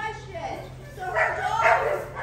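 A dog barks twice, about half a second apart, a little over a second in; these are the loudest sounds here.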